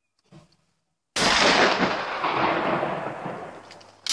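A single shotgun shot from an over-under shotgun at a clay target, followed by a long rolling echo that fades away over about two and a half seconds.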